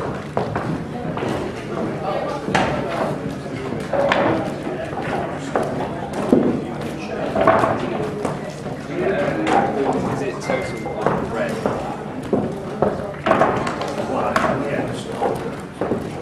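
Indistinct talk in a large hall, with short knocks and clacks of pool balls being gathered and racked.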